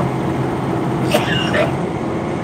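Steady drone of a semi-truck's diesel engine and tyre and road noise heard inside the cab while cruising on the interstate, with a short higher-pitched sound about a second in.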